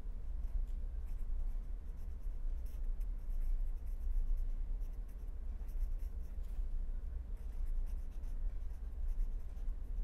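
Pen writing on paper, faint scratching of the strokes over a steady low hum.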